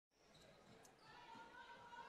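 Faint basketball dribbling on a hardwood gym floor: a few soft bounces of the ball under a low hum of the hall.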